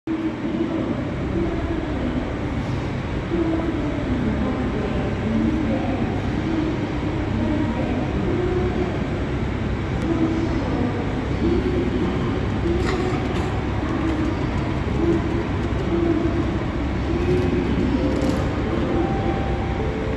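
A steady low hum from a train standing at a covered station platform, with some uneven middle-pitched rumble and a few faint clicks.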